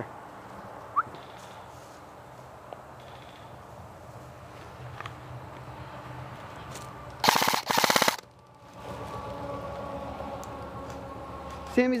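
Airsoft rifle firing two short full-auto bursts back to back, a little past halfway: a rapid, even clatter of shots.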